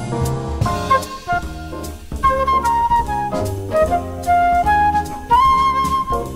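Small jazz group playing: a melody from wind instruments over acoustic bass, piano and drum kit, with a lead line of short notes and a few held ones.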